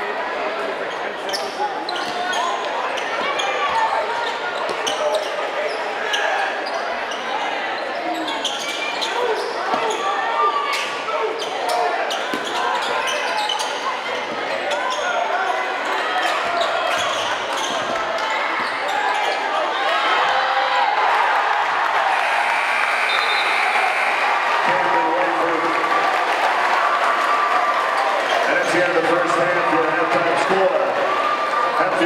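A basketball bouncing on a hardwood gym floor under steady crowd chatter, with a steady high tone for about two seconds about three-quarters of the way through.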